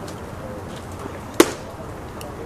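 A pitched baseball popping into the catcher's leather mitt: one sharp smack about one and a half seconds in.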